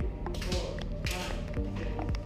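Northern Thai percussion music playing for the Fon Jerng dance. It has steady low ringing tones, sharp taps, and a hissing crash about half a second in.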